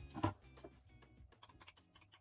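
Wooden spoon beating thick cake batter in a glass mixing bowl: a knock near the start, then a quick run of light clicks as the spoon hits the glass.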